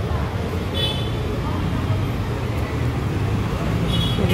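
Steady low rumble of street traffic, cars and scooters passing on the road.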